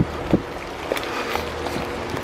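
Steady rush of water from a rain-swollen brook running high, with a few soft knocks.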